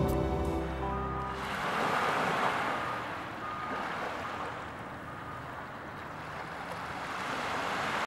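Ocean surf, waves washing in and out in slow swells, after background music fades away in the first second or so.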